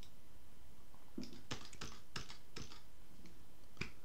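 Computer keyboard keys clicking: a short run of separate keystrokes starting about a second in.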